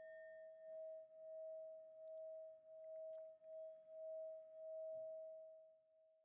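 A single struck metal tone ringing out, bell-like, at one steady pitch with a slow pulsing waver in loudness, fading away near the end.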